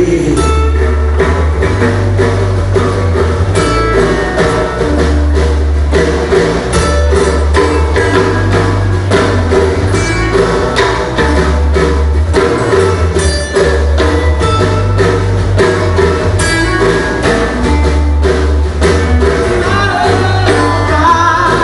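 Live acoustic band playing an instrumental passage: acoustic guitars with percussion keeping a steady beat over a deep bass.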